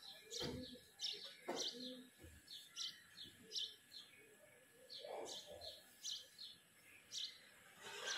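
Birds chirping: short, high chirps repeating about twice a second, with a few faint low sounds in the background.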